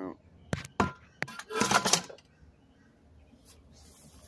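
Scrap aluminum pieces clanking in a metal tub: three sharp knocks, then a longer metallic clatter about a second and a half in.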